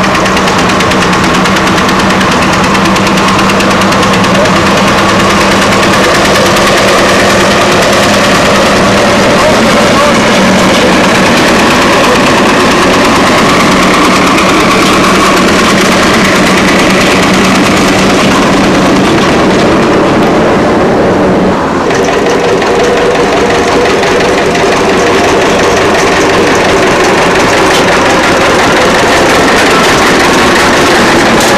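Vintage tractor engine running steadily as it tows a wagon, a continuous engine note that shifts in pitch about two-thirds of the way through.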